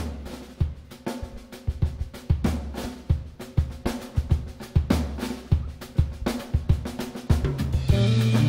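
Jazz drum kit playing alone: quick snare and rimshot strokes over bass drum hits, building gradually louder. Sustained pitched notes from the band come in right at the end.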